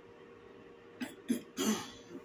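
A woman coughing from an irritated throat: two short coughs about a second in, then a longer one near the end.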